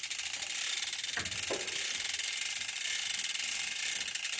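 Ratchet of the hand-worked winch on a missile hoisting gear clicking rapidly and steadily as it lifts an RBS 15 missile up to a Gripen's wing hardpoint.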